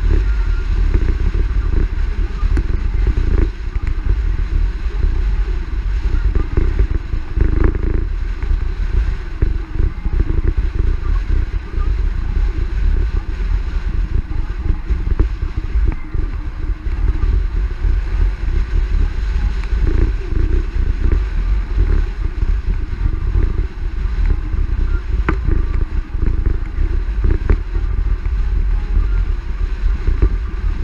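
Steady wind rush and road noise of a car driving along, picked up by a camera mounted on its hood, with a heavy low rumble throughout.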